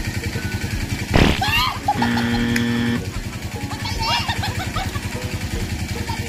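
An engine runs steadily in the background with an even low putter. About a second in, a thrown lump of mud lands with a sharp splash, the loudest sound, and is answered by shrieks. A flat, held tone sounds for about a second shortly after.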